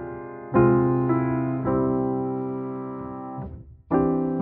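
Slow, gentle piano music: chords struck a few times and left to fade, dropping almost to nothing for a moment near the end before the next chord.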